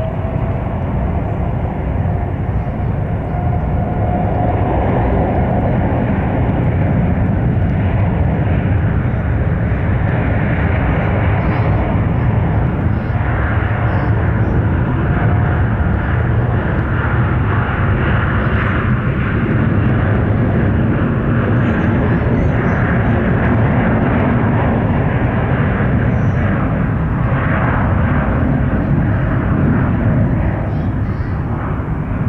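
Boeing 787 twin-engine jet airliner on its takeoff roll, engines spooled up to takeoff thrust. A rising whine comes in the first few seconds, then a steady, loud engine noise holds to rotation.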